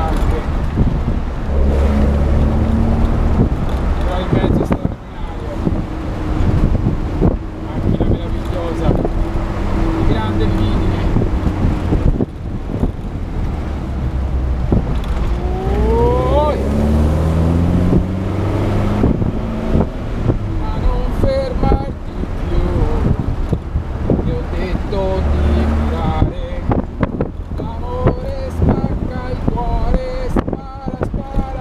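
1972 Alfa Romeo Spider 1600's twin-cam four-cylinder engine under way. Its revs rise and fall as it is driven through the gears, with a sharp climb in pitch about halfway through.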